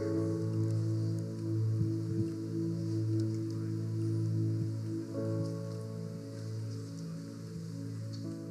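Soft background keyboard music: slow, sustained pad chords over a steady low bass note, with the chord shifting about five seconds in.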